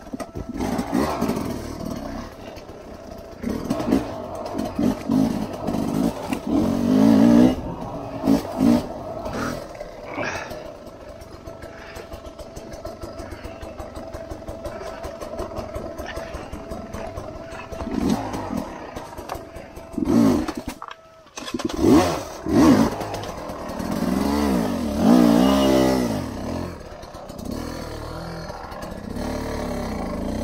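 Dirt bike engine under the rider, revved up and down on the throttle while picking along a rough trail: several sharp rises in revs, with a steadier, lower-revving stretch in the middle and a short drop off the throttle just before more hard revs near the end.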